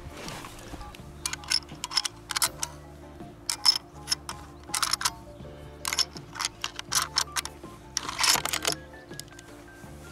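Irregular sharp metallic clicks of brass cartridges being pressed into the magazine of a bolt-action hunting rifle, with a louder cluster of clicks near the end, over steady background music.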